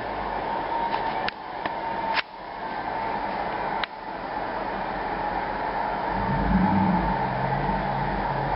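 A Dodge Ram 1500 pickup plowing snow, its engine running as a steady muffled rumble heard from indoors through a window glass. Three sharp clicks fall in the first four seconds.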